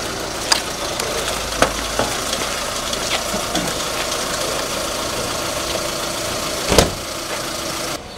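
A vehicle engine idling steadily, with a few short knocks and one louder sharp knock nearly seven seconds in.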